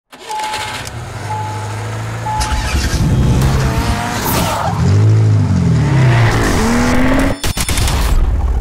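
Intro sound effects: three short beeps about a second apart, then a car engine revving up and down in pitch. The sound cuts off sharply near the end with a few sharp clicks.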